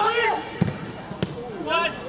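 Football players shouting on the pitch, one call at the start and another near the end, with two sharp thuds of the ball being kicked in between.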